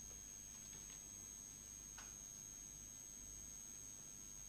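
Near silence: room tone with a faint steady high-pitched whine and a faint low hum.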